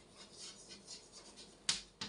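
Chalk writing on a blackboard: faint, quick scratchy strokes as words are written, with one sharp click near the end.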